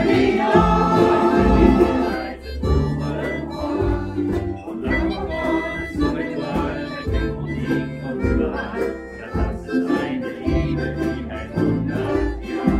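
A roomful of ukuleles strummed together in a steady rhythm, with low bass notes underneath.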